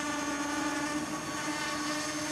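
Small quadcopter hovering: four brushless motors on KISS 24A ESCs spinning 5x4.5 inch bullnose props, giving a steady propeller buzz that holds one pitch.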